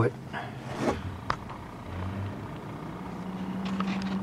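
A steady low engine hum that grows slowly louder over the last two seconds, with a single click about a second in.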